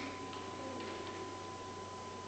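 A few faint clicks from a butane candle lighter being worked by a child trying to get it to light, over quiet room hiss and a thin steady tone.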